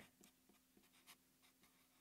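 Very faint strokes of a felt-tip marker writing on paper, a few soft scratches and taps, over a faint steady hum; otherwise near silence.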